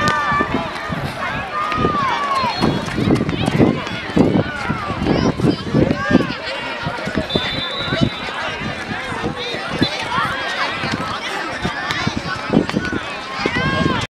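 Young footballers' high voices shouting and calling out to each other on the pitch during play, with scattered short knocks.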